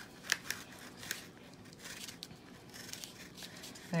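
Knife cutting into a fleshy amaryllis flower stalk at the top of the bulb: a few sharp clicks in the first second, then fainter scattered crackles as the blade works through.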